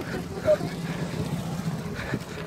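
A small motor vehicle engine running steadily at low speed. A brief shout breaks in about half a second in.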